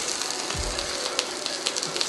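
Leafy-green stems frying in hot oil in a wok, a steady sizzle with scattered small crackles as their moisture cooks off.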